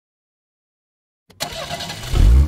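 Silence, then about a second in a click of an ignition key being turned and a starter motor cranking an engine, just before it catches.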